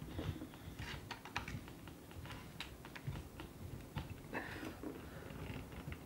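Resealable plastic screw-top stopper being twisted onto a glass sparkling wine bottle: faint, irregular small ticks and scrapes from the threads, with no clear double click of a full seal.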